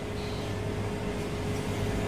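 Operating-theatre equipment background: a steady low electrical hum and a constant single tone over an even hiss of air, unchanging throughout.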